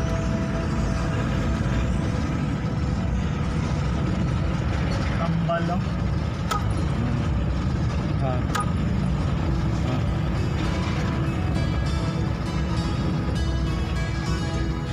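Steady engine and road rumble inside a moving car's cabin, under background music, with two sharp clicks around the middle.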